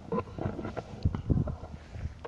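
Wind buffeting the microphone, with irregular low thumps and a few light knocks.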